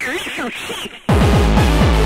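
Speedcore track: a break in which a sampled voice with sliding pitch plays almost alone, then the distorted kick drum comes back in about a second in, hitting very fast, roughly six to seven beats a second.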